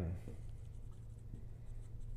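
A red dry-erase marker writing a word on a whiteboard in faint, short strokes, over a low steady room hum.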